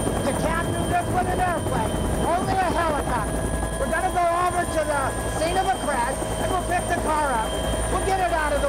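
Helicopter running in flight, heard from inside the cabin with the side door open: a steady high turbine whine over a constant low rotor rumble, with a man's voice talking loudly over it.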